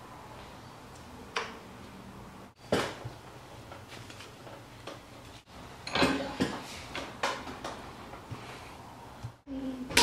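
Short metal-on-metal clicks and clanks from a double cardan U-joint and its yokes being handled and fitted in a bench vise, the loudest about three seconds in and a quick run of them around six seconds.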